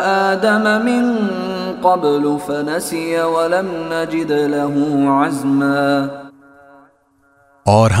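A man chanting Quran recitation in Arabic: one melodic voice holding and gliding notes in long drawn-out phrases. It fades out about six seconds in, and a spoken word begins just before the end.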